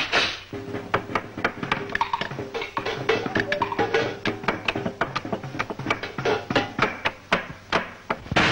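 Cartoon fight soundtrack: a fast, irregular string of whacks and knocks over band music, with a held note under the first half.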